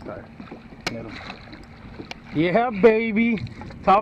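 Low, even background noise on a small boat, with one sharp knock about a second in. In the second half a man shouts excitedly in long, drawn-out calls.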